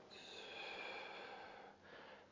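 A faint, drawn-out breath out through the nose, a soft airy hush that fades away near the end.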